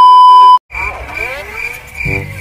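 A loud, steady test-tone beep lasting about half a second, the kind played over TV colour bars, cuts off suddenly. After a short gap, added sound effects come in: gliding whistle-like tones and a high cricket-chirp effect pulsing about twice a second.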